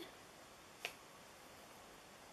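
Near silence: room tone, with a single short click about a second in.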